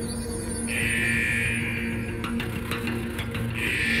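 Tense, eerie soundtrack music from a TV sci-fi drama: a held low drone under a high sustained tone that swells in twice, with a few light clicks between.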